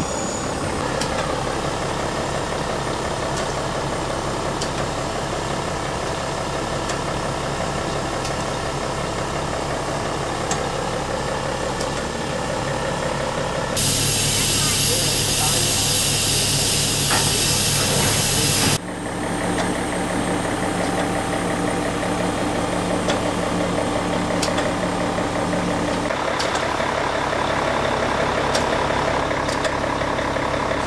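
German class 01 steam locomotives standing in steam, with a steady mechanical hum. About halfway through, a loud hiss of escaping steam lasts about five seconds and then cuts off suddenly.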